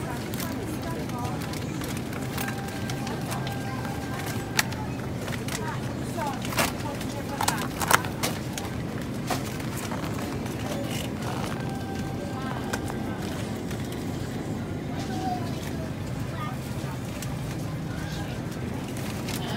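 Supermarket background: a steady low hum with faint voices and music. A few sharp clicks and crackles of plastic meat trays being handled come between about four and eight seconds in, the loudest near eight seconds.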